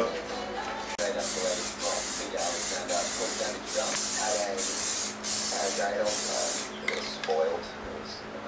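Aerosol spray can of high-build primer filler hissing in a series of short passes, about eight bursts of roughly half a second each. The spraying stops about seven seconds in.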